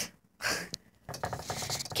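Camera-handling noise: a short rustle about half a second in, a sharp click just after, then faint fumbling.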